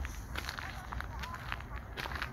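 Indistinct voices of people talking at a distance, in short scattered fragments, with footsteps and a steady low rumble underneath.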